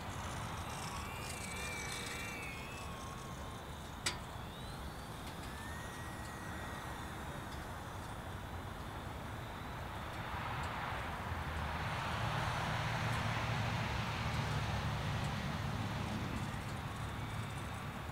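Outdoor ambience with the faint high whine of a HobbyZone Apprentice STOL S ultra-micro RC plane's electric motor and propeller flying overhead. A sharp click comes about four seconds in, and a louder rushing noise swells up in the second half.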